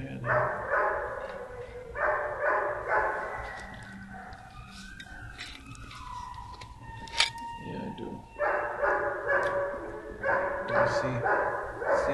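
Shelter dogs barking in quick runs of barks, with a quieter lull in the middle before the barking picks up again.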